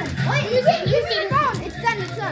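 Children's voices, excited shouting and chatter that forms no clear words, with music playing underneath.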